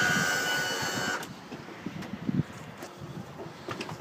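The outboard's power trim/tilt electric pump motor runs with a steady whine and cuts off about a second in. After that there are a few faint knocks and scuffs.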